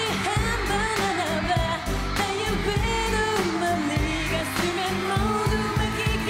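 A woman singing a Korean dance-pop song over pop backing music with a steady beat.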